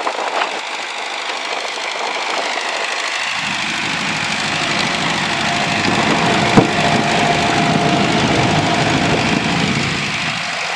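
A Ford farm tractor's engine running steadily as the tractor floats, with water churning around its pontoon drums and growing louder. A steady whine joins about halfway through, and a single sharp click comes about two-thirds of the way in.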